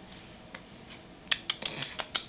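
A quick run of small, sharp clicks, about five in under a second, starting a little past halfway after a quiet first second.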